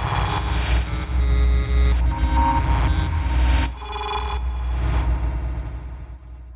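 Title-sequence music sting: a deep bass rumble under a dense, noisy synthesizer layer, changing in a few sections and fading out near the end.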